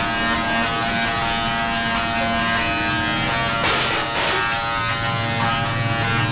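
Tesla coil discharging inside a mesh cage, its sparks arcing to the metal with a steady, many-toned electric buzz. A short rush of crackle comes about four seconds in, and the buzz drops to a lower pitch near the end.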